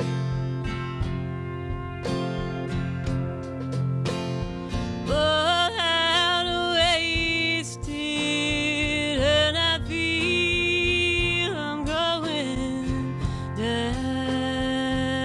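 Country band playing: strummed acoustic guitar, electric bass and drums. From about five seconds in, a pedal steel guitar plays a lead of held, sliding notes with vibrato over them.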